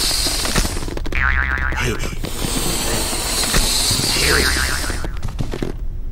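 Cartoon sound effects of a jet airliner: a steady rushing engine hiss, broken twice by a short, falling, wobbling tone.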